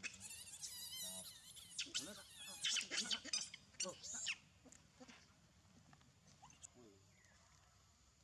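Infant macaque screaming in high, wavering cries, which stop about halfway through.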